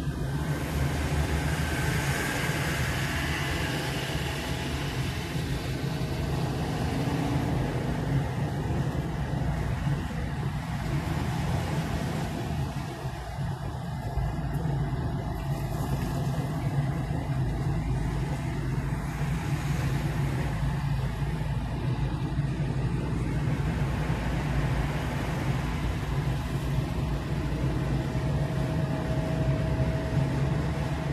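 Steady road noise of a car driving at motorway speed, heard from inside the cabin: a low engine and tyre drone with an even rushing hiss.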